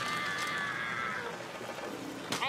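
A single high-pitched cartoon-character scream, held for just over a second with a slight downward drift, then fading.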